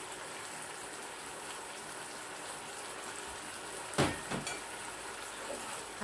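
Pumpkin frying in oil in a frying pan, a steady sizzle. About four seconds in, two sharp knocks of a kitchen utensil.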